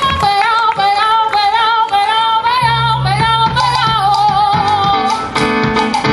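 Live Cuban band music: a woman sings long, wavering notes over plucked-string accompaniment. A bass line comes in about two and a half seconds in, and the full band fills in near the end.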